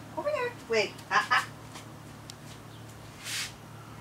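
Young puppies whining and yipping in short, high, falling cries while held in a wait for their food, with a quick run of raspy yips about a second in. A short hiss follows a little past three seconds.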